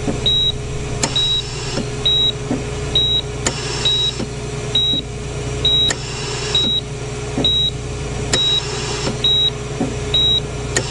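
Hospital patient monitor beeping steadily, a short high beep a little under once a second, in time with the heartbeat. Under it a soft hiss swells with a click about every two and a half seconds, over a steady hum.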